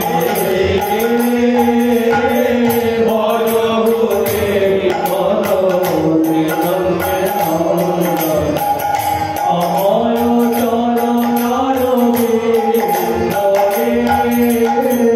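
Bengali padavali kirtan: male voices singing a devotional melody over a sustained harmonium, with small hand cymbals keeping a steady beat throughout.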